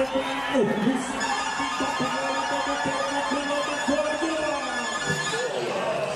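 Arena PA sound: music with held notes under a voice, with crowd noise.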